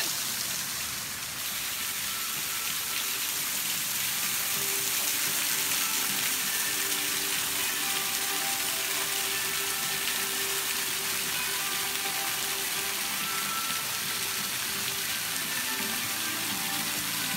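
Steady hiss of rushing river water.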